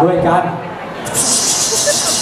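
A man's voice for a moment, then a steady aerosol air-freshener spray hissing for about a second and a half, starting about a second in.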